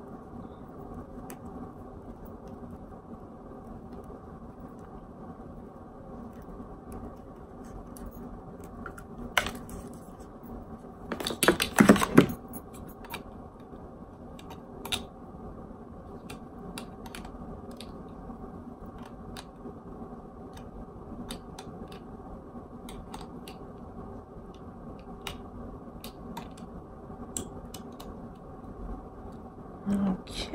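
Small plastic clicks and rustling from hands handling and untangling a toothbrush's charging cable and charger, with a louder burst of clicking and rustling about eleven seconds in. A steady low hum runs underneath.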